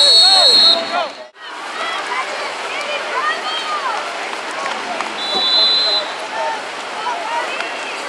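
A whistle blown twice: a loud, steady, shrill blast lasting under a second at the very start, and a fainter one about five seconds in. Shouting voices from the sideline run underneath, and the sound cuts out for a moment about a second in.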